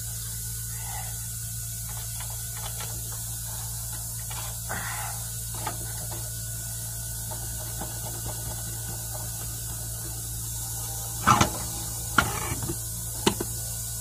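Light metal clicks and scrapes over a steady low hum, then a few sharp knocks and clunks near the end as a torque converter is worked off an automatic transmission's input shaft and lifted out of the bellhousing.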